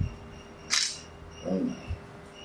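A smartphone camera's shutter sound: one short click-hiss a little before the middle, with soft low handling thumps near the start and the end.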